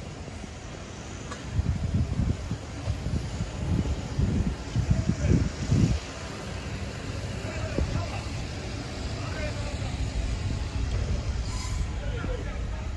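Wind buffeting the microphone in irregular low rumbling gusts, strongest in the first half, over steady outdoor background noise.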